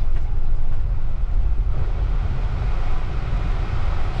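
Steady low rumble inside a car's cabin while it drives along an unpaved dirt road: engine and tyre noise with no sudden events.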